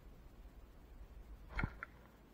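A bow shot: the bowstring is released with one sharp snap about one and a half seconds in, followed by a brief faint click.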